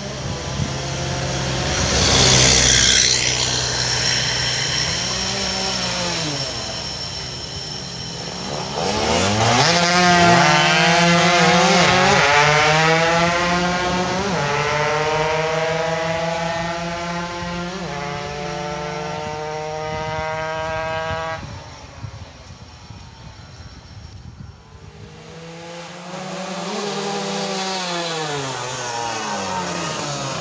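Race-tuned underbone moped engines revving hard: one accelerates through its gears, its pitch climbing and dropping back at each upshift, while others rise and fall in pitch as they pass.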